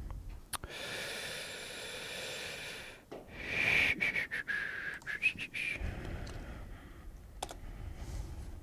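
Breathing close to a headset microphone with a whistling note on the breath, loudest about three to four seconds in, followed by a few sharp computer clicks.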